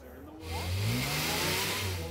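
A car engine revving, starting about half a second in. Its pitch rises for about a second, then holds steady, with a rushing hiss over it.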